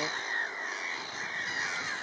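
A colony of black-headed gulls calling in the background, many short arched calls overlapping.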